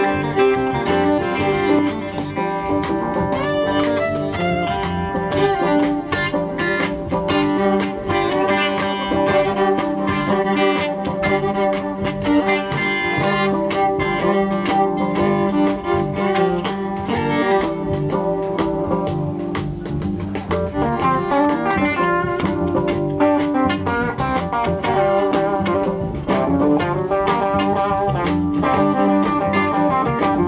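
Live blues band playing: bowed fiddle over electric guitar and banjo, with steady continuous ensemble playing.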